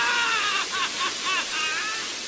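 A young man's voice wailing in grief, a long anguished cry that breaks into short, catching sobs about halfway through, over the steady hiss of heavy rain.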